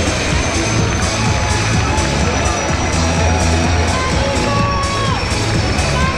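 Music playing over loudspeakers with a steady beat, mixed with a crowd of spectators cheering.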